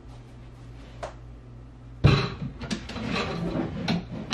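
Low steady room hum, then from about halfway a run of knocks and scraping as furniture is shifted into place.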